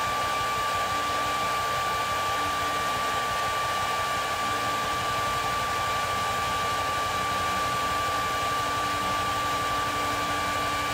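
Hair dryer running steadily, a constant rush of air with a steady whine, blowing hot air on plastic action-figure parts to soften them for fitting.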